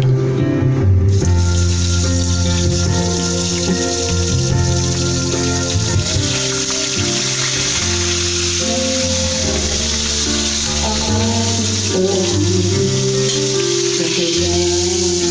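Whole tilapia frying in hot oil in a steel wok: a steady sizzle that starts suddenly about a second in, as the fish goes into the oil. Background music plays throughout.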